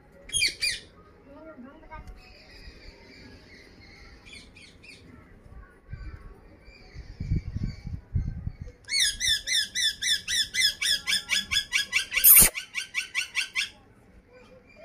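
Parakeets during a beak-to-beak feed exchange between an Indian ringneck and an Alexandrine. There is a short loud squawk at the start and a few soft low thumps in the middle. Then comes a fast run of rising high chirps, about five a second, lasting some four seconds, with a sharp click near its end.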